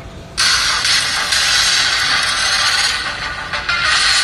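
A movie teaser's soundtrack, music and sound effects, playing loudly through a smartphone's small speaker, thin and without bass. It starts suddenly about half a second in.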